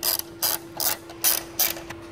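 Hand ratchet wrench clicking in short runs, about five strokes in two seconds, as a 13 mm bolt is backed out.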